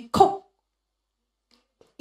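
A short burst of a woman's voice into a handheld microphone, falling in pitch, then dead silence for about a second and a half.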